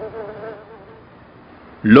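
Flying insects buzzing: a faint, wavering hum that fades out about a second in.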